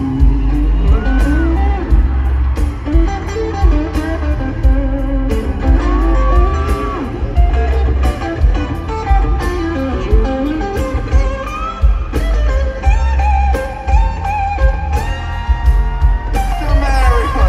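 Live band music led by an electric guitar playing a melodic lead line with bent and held notes, over heavy bass and a steady drum beat.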